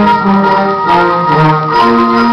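Middle school concert band playing: sustained wind chords over a moving line in the lower voices, with light short percussion strikes.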